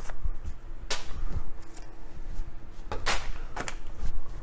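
A few separate sharp clicks and taps of light handling: one about a second in, then a close pair and another near the end, over a faint steady hum.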